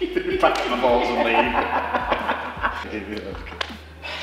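Men laughing and chuckling, with some unclear talk mixed in.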